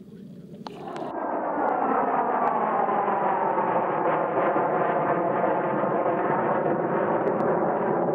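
Aircraft flying overhead: its engine noise builds up about a second in, then holds steady and loud while its pitch slides slowly down as it passes.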